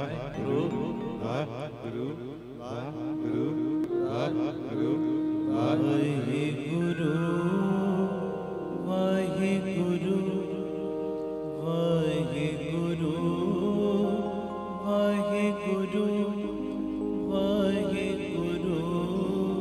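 Live Gurbani kirtan: a man singing a devotional chant into a microphone with musical accompaniment. The first few seconds waver, and later the notes are held long and steady.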